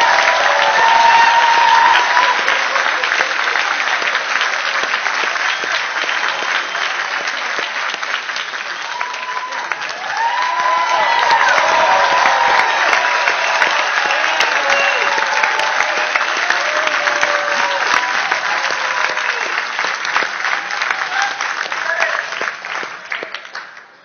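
Audience applauding and cheering, with shouts over the clapping. The applause swells again about ten seconds in and dies away at the end.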